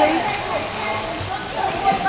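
Children kicking and splashing as they swim lengths in an indoor pool: a steady wash of splashing water, with voices echoing around the pool hall.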